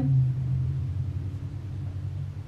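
A low, steady rumble, a little stronger at the start.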